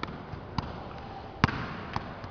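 A football being juggled by a barefoot player: about four separate touches of the ball, unevenly spaced, the loudest about one and a half seconds in.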